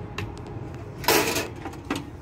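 Metal lid of a Coleman two-burner camp stove being shut: a small click, then a brief loud clatter about a second in as the lid comes down, and another click near the end.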